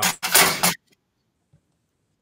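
A short, breathy burst of voice, then about a second and a half of complete silence.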